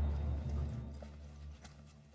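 Low background-music drone fading away, with a few faint footsteps on a hard floor in the second half.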